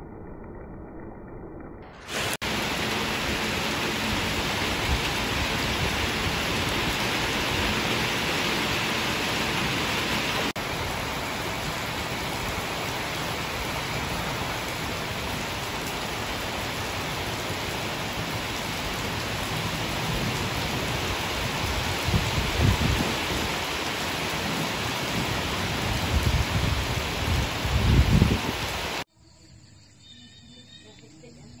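Heavy rain pouring steadily onto waterlogged ground and leaves, a dense even hiss that comes in loud about two seconds in and cuts off just before the end. A few low rumbles rise under it in the last several seconds.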